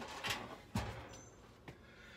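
Two short metallic knocks, about a third of a second and three quarters of a second in, then a faint click near the end: metal parts being handled and set down at an opened breaker panel.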